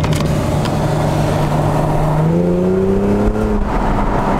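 Nissan Skyline V36 sedan's V6 engine heard from inside the cabin after a downshift. It runs steadily at first, then its note rises as the car accelerates for about a second and a half, and eases off near the end.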